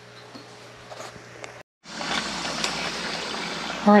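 Faint bubbling of black walnut syrup boiling down in a saucepan. After a cut, tap water runs steadily and more loudly from a kitchen faucet into a stainless steel stockpot in the sink.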